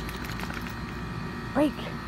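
A steady low background rumble with a few faint clicks in the first second, then a woman's short spoken command, 'Break', near the end.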